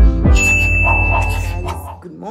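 Subscribe-animation sound effects: clicks and a bright bell-like ding that rings steadily for about a second and a half, over music with a deep bass that stops near the end.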